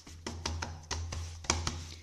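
A cake pan full of freshly poured cream knocked lightly against the tiled counter several times in an irregular rhythm, to level and settle the filling, over a steady low hum.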